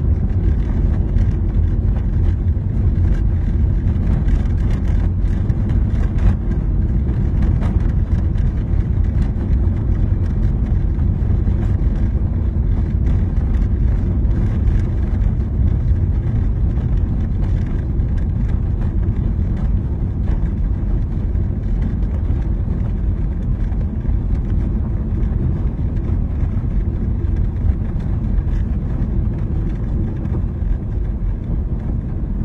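A car's steady low rumble of engine and road noise while driving, heard from inside the cabin.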